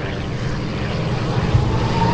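North American P-51 Mustang's liquid-cooled V-12 engine and propeller droning steadily as the aircraft dives out of a loop, growing a little louder. Near the end a thin whistle sets in and rises slowly in pitch: the Mustang's howl, which is said to come from the gun ports bumping out of the wing leading edges.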